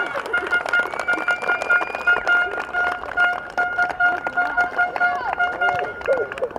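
Hand clapping after a goal, sharp claps at an uneven pace, with a steady high beep repeating about twice a second behind it.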